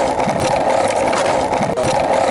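Skateboard wheels rolling over asphalt with a bulldog riding the board: a steady rolling rumble.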